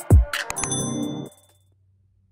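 Electronic intro music with a beat, overlaid about half a second in by a click and a bright, ringing ding sound effect of a subscribe-button animation; the music stops about a second and a third in, leaving silence.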